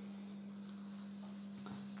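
Faint soft taps of tarot cards being picked up and laid down on a cloth-covered table, over a steady low hum.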